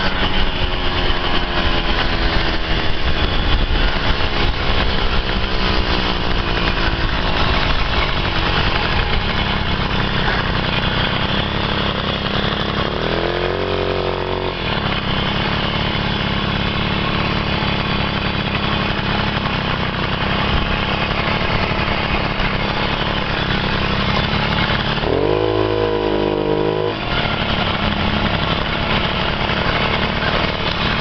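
Puch Pinto moped's small two-stroke engine running under way. Its pitch falls gradually over the first several seconds, and it gives two short bursts of higher revs, about a third of the way in and near the end.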